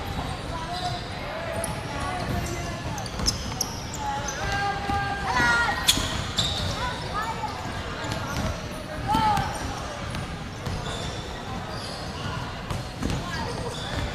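Basketballs bouncing on a wooden court during a warm-up, with sneakers squeaking now and then and a louder squeak just before six seconds in, over the chatter of players and spectators in a large sports hall.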